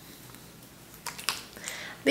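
Hands scrunching wet curly hair coated with styling cream, giving a few faint, short clicks about a second in.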